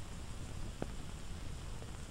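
Steady low hiss of an old film soundtrack between lines of narration, with one faint tick a little under a second in.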